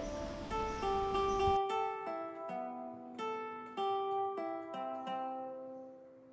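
Background music: a slow melody of plucked string notes, each ringing and fading, about two a second, growing quieter toward the end.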